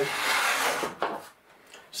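A small hand plane shaving a wide strip off the leading edge of a balsa wing in one stroke, a dry hiss of about a second that stops abruptly.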